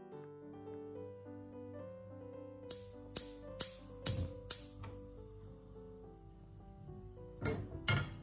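Gas stove's electric igniter clicking five times, about two clicks a second, over background music with a piano-like melody. A short clatter near the end.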